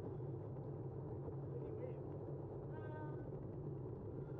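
Steady wind and tyre rumble of a moving bicycle on a paved path, with one short, high pitched voice call from someone ahead about three seconds in.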